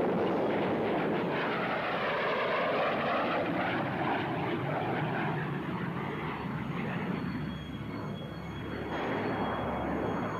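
A loud, steady rushing roar with a slowly sweeping, hollow phasing tone, like a jet passing overhead. It dips a little about eight seconds in, then swells again.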